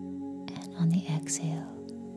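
Ambient meditation music: a steady held drone chord, with a few short, soft whisper-like vocal sounds laid over it about a second in.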